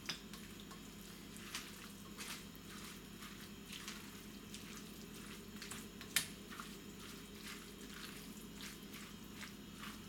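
Silicone spatula stirring a thick, wet corn, tuna and mayonnaise salad in a glass bowl: faint, soft squelching with small clicks, and one sharper tap about six seconds in.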